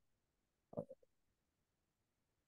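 Near silence, broken once, just under a second in, by a brief low sound in three or four short pieces.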